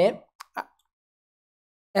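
A man's voice trails off, then a single faint click and a short soft mouth sound follow, then dead silence until speech starts again at the very end.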